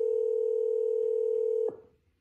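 Telephone ringback tone: a single steady two-second ring heard by the caller on an outgoing call, cutting off sharply near the end.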